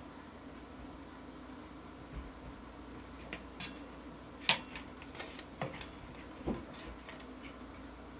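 A few light, scattered clicks and taps from handling a tape measure, a marker and a steel rod on a workbench, the sharpest about halfway through, over a faint steady hum.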